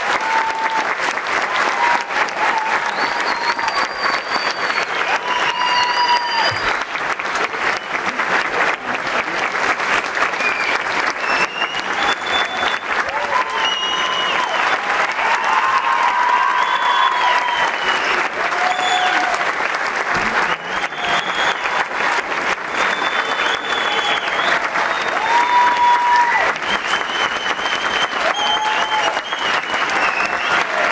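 A theatre audience applauding steadily, with voices calling out and cheering over the clapping throughout.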